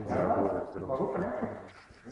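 People talking, the words not clear, loudest in the first second and a half and trailing off near the end.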